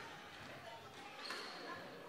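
Faint sounds of a squash rally on a wooden court floor, with a short, high shoe squeak a little over a second in.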